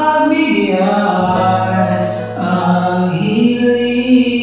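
Karaoke singing over a backing track: a voice holding long, drawn-out notes, each lasting about a second and sliding into the next, over a steady low accompaniment.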